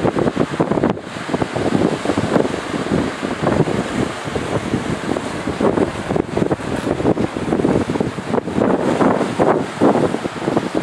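Wind buffeting the microphone in uneven gusts, over surf washing onto a rocky shore.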